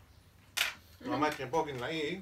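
A short, sharp click about half a second in, then a man's voice speaking indistinctly for about a second.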